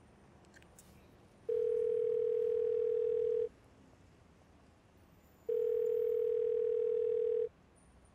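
Telephone ringback tone: two steady, single-pitched rings of about two seconds each, two seconds apart, the line ringing while the caller waits for an answer. A few faint clicks come just before the first ring.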